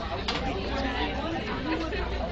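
Indistinct voices talking quietly, low chatter with no clear words.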